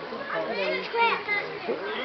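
Children's voices talking and calling, with no clear words.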